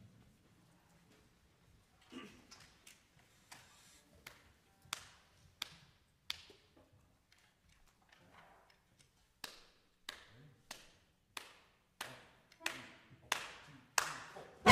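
Sharp clicks setting the tempo before a big band starts: a few scattered ones at first, then a steady run of about one and a half a second from halfway through, growing a little louder toward the end.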